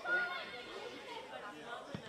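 Indistinct shouting and chatter of players' voices across a football pitch, with one short thud near the end, a ball being kicked.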